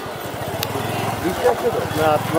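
Small motorbike engine running steadily close by, a low even putter, with crowd voices on a busy footbridge.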